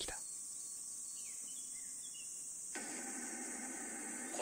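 Faint, steady, high-pitched chirring of insects in a background ambience. About three quarters of the way through, a faint hiss of static cuts in suddenly.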